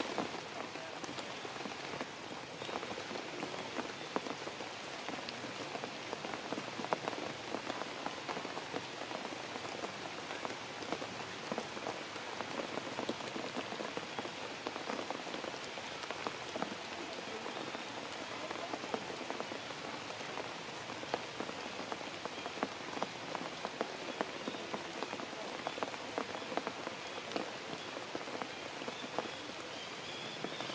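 Steady rain falling on forest foliage, a constant hiss scattered with many separate drop hits.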